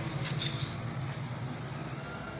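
A brief rustle of fabric being handled and pinned, in the first second, over a steady low hum.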